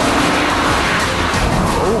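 Six-cylinder sports car engines driven hard in a race on a circuit, a dense steady rush of engine and road noise.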